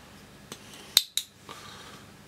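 Three short, sharp metallic clicks from a metal bottle cap being handled. The loudest is about a second in, with a second one just after it.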